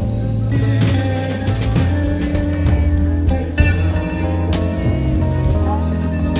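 Live band music played through a concert sound system, heard from the crowd: heavy, steady bass with pitched instrument lines above and a few sharp crashes.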